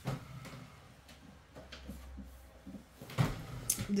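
Handling noises of a boxed deck of oracle cards being fetched and brought to the table: a few scattered knocks and bumps. The loudest knock comes about three seconds in, followed by a brief scrape.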